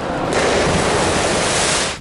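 A person wrapped in a large fabric parachute plunging into pool water: a sudden splash about a third of a second in, followed by an even rush of spray that holds for over a second and cuts off abruptly near the end.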